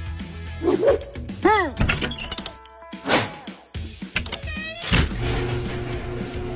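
Background music with a dog giving a few short, arched barks over it, and a sharp thump about five seconds in.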